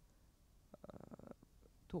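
A pause in a woman's talk into a microphone: faint room tone, with a short, faint crackly sound just under a second in. Her speech starts again at the very end.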